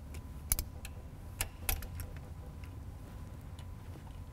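Scattered metallic clicks and clinks of a socket tool on the shifter's mounting bolts, the loudest three about half a second, one and a half and just under two seconds in, over a low steady hum.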